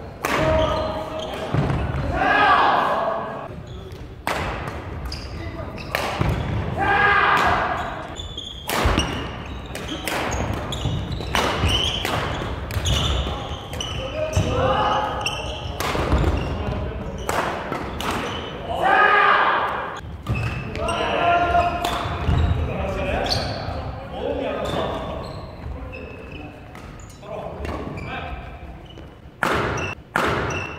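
Badminton doubles rallies: repeated sharp racket hits on the shuttlecock and players' feet thudding on the wooden gym floor. Players' voices call out between and during the rallies, in a large hall.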